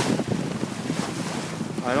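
Wind buffeting the microphone aboard a sailboat under sail, over the rush of sea water along the hull.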